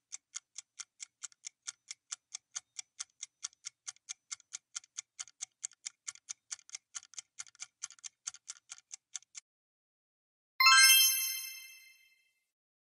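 Quiz countdown-timer sound effect: quick, even clock-like ticking, about five ticks a second, that stops near the end of the count. After a second's pause a bright bell-like ding rings and fades, signalling the reveal of the correct answer.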